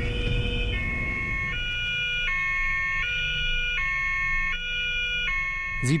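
German police car's two-tone siren (Martinshorn) sounding on an emergency run, alternating between a high and a low note about every three-quarters of a second. A car engine rumbles underneath in the first second or so.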